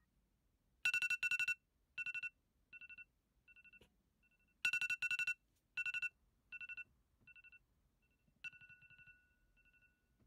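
Apple iPhone X alarm ringing: trains of rapid electronic beeps on one pitch, loud at first and fading away, the phrase starting over about every four seconds.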